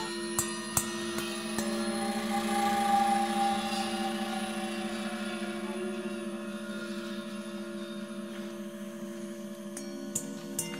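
Background music of sustained held notes, with a few soft percussive strikes in the first two seconds and a swell about three seconds in.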